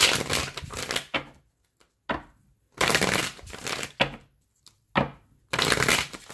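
A deck of tarot cards being shuffled in three bursts, each about a second long and starting sharply.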